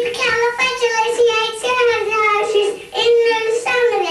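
A young girl singing, holding long, mostly steady notes with a brief break about three seconds in.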